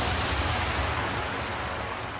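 Cartoon sound effect of a surging wave of water: a rush of water that sets in suddenly and slowly dies away, over a low rumble.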